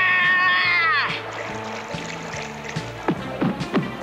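A loud, high wailing cry lasting about a second, sliding down in pitch as it ends, over orchestral background music. Near the end come a few quick downward-swooping sound effects.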